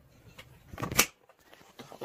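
Handling noise from the recording device being grabbed and moved: a short rustle that builds to a sharp knock about a second in, then a couple of faint clicks.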